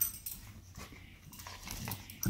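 Two dogs play-wrestling on carpet: faint scuffling of paws and bodies, with a short sharper sound right at the start.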